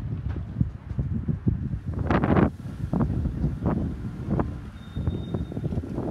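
Wind buffeting the microphone in an uneven low rumble, with a louder noisy gust lasting about half a second about two seconds in.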